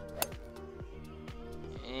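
Golf club striking a teed-up ball on a drive: one sharp, short crack about a quarter second in, over background music with a steady beat.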